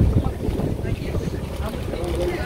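Wind buffeting a phone microphone, a fluttering low rumble, with faint chatter of a crowd of shoppers underneath.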